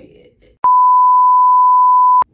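A steady single-pitch electronic test tone, the kind played with TV colour bars. It starts suddenly about half a second in, holds at one loud, even pitch, and cuts off abruptly just after the end.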